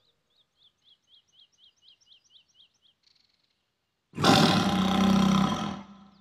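A loud tiger roar lasting about a second and a half, starting about four seconds in. Before it, faint high chirps repeat about four times a second.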